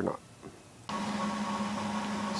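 A man's last spoken word ends, then near silence until about a second in, when a steady machine-like hum with a constant low tone starts abruptly.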